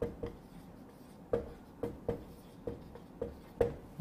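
Marker pen writing on a whiteboard: about eight short, irregular strokes and taps of the felt tip against the board.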